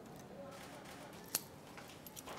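Faint clicks and light rustle of a handbag being handled as a woman turns to leave, with one sharp click about two-thirds of the way through.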